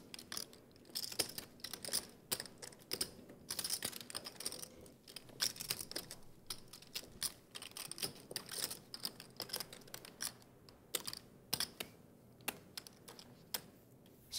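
Clay poker chips clicking and clattering in a player's hands at the table: quiet, irregular clicks throughout.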